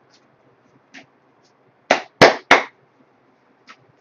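Tarot cards being handled: three sharp slaps in quick succession about two seconds in, roughly a third of a second apart, with a few faint card clicks before and after.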